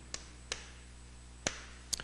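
Chalk tapping against a chalkboard while characters are written: four short, sharp taps spread over two seconds, with quiet between them.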